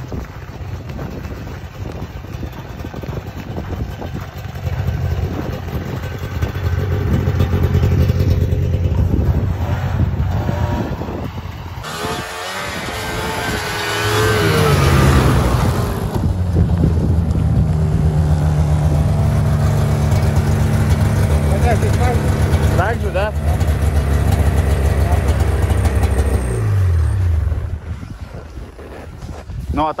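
Taiga Varyag 550 V snowmobile's engine running, heard from the seat: it revs up about halfway through as the sled moves off, holds a steady pitch while riding, then falls away as it slows a few seconds before the end.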